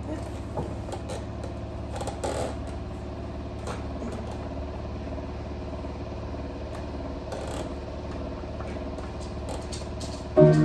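A steady low hum with small scattered clicks and knocks, as of things being handled on a piano's music desk and a tablet screen being tapped.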